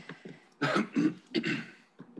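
A person coughing, three short coughs in quick succession about half a second in.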